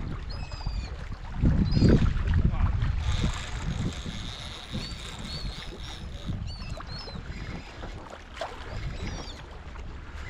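Wind and water rumbling around the rocks, loudest one and a half to three seconds in, with many short, high calls from a flock of seabirds feeding over the water. A steady high whine runs for a few seconds in the middle.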